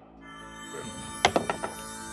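A red twenty-sided die is rolled into a wooden dice tray and clatters in a few quick knocks a little over a second in. Soft background music plays under it.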